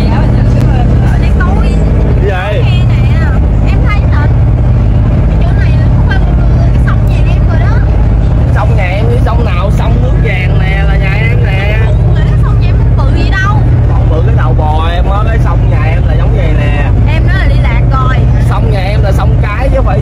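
Steady low engine drone of a passenger boat, heard inside its cabin, with voices over it.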